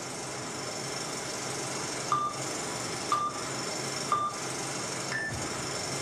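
Countdown beeps: three short electronic beeps about a second apart at the same pitch, then a fourth, higher beep, the usual 'go' signal at the end of such a countdown, over a steady hiss.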